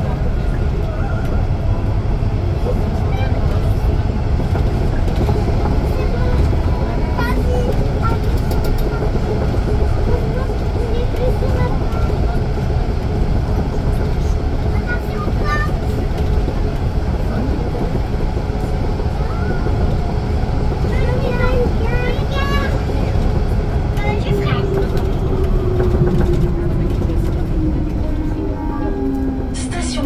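Rennes metro line B train, a rubber-tyred Siemens Cityval, running through the tunnel with a steady loud rumble. In the last few seconds a whine falls steadily in pitch as the train slows for the next station.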